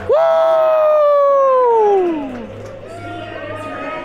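A person's loud whooping cheer, held for about two seconds and then sliding down in pitch, followed by fainter whoops and chatter from the crowd around.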